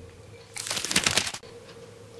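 A person sipping wine from a glass: a short noisy slurp starting about half a second in and lasting just under a second.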